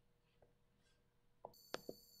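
Near silence, then three faint short clicks about one and a half seconds in, with a thin steady high whine starting at the same moment.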